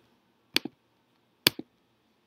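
Two computer clicks about a second apart, each a sharp press followed quickly by a softer release, as browser tabs are clicked.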